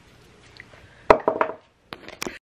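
A sharp knock about a second in, followed by a brief clatter of small knocks from a hand grabbing the camera. The sound then cuts off suddenly.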